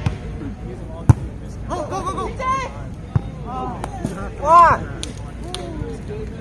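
Shouted calls and exclamations from players, loudest a little before the end, broken by a sharp smack of a volleyball about a second in and a fainter one a couple of seconds later.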